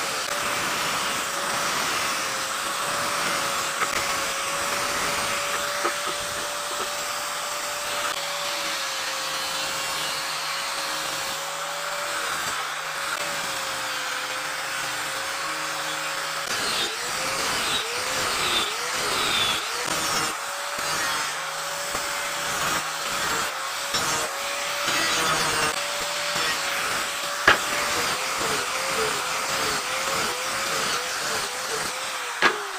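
Angle grinder with a sanding pad running and sanding a wooden board, its motor whine steady at first, then dipping in pitch again and again in the second half as the disc is pressed into the wood. One sharp knock about three-quarters of the way through.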